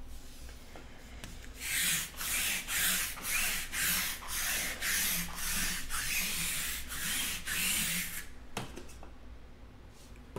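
Rhythmic dry rubbing, back and forth at about two strokes a second, starting a second and a half in and stopping about eight seconds in.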